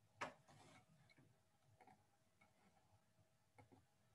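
Faint computer mouse clicks: one sharper click about a quarter second in, then a few softer ticks, over a faint steady hum.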